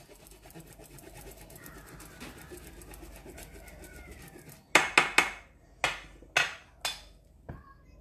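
Cheese being grated on a small handheld round grater: a fast, even run of scraping strokes for about four and a half seconds, then about half a dozen sharp knocks.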